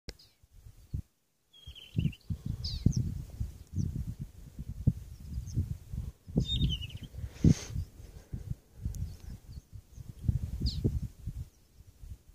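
Wind buffeting the phone's microphone in irregular low gusts, with several short, high chirps of a bird sliding in pitch, one near the start and others scattered through.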